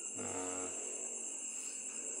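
Steady high-pitched trilling of crickets, with one short, low voiced sound from a man, like a hum, near the start.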